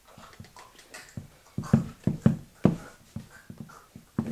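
A person making short, strained choking grunts and gasps in a quick series, about two a second, starting about a second in, while acting out a hanging.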